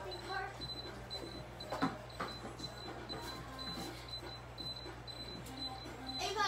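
Children's voices in a small room, briefly at the start, then a sharp knock about two seconds in and a faint high, broken tone under low background noise.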